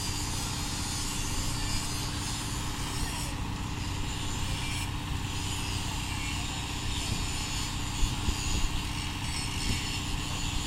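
Engine of a truck-mounted crane running steadily during a lift, a constant low hum with an even hiss above it.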